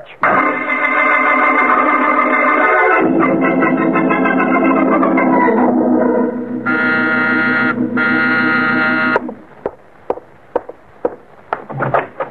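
Organ music bridge: a loud held chord that shifts about three seconds in and then falls, ending in two high held chords that stop about nine seconds in. A few light knocks follow near the end.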